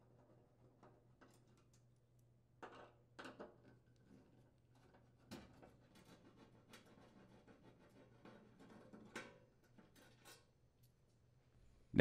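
Faint, scattered clicks and scrapes of a Phillips screwdriver turning out screws from a gas range's metal cooktop, over a faint low hum.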